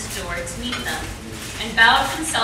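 Cutlery and dishes clinking at a dinner table, with people talking around it; one voice comes up louder near the end.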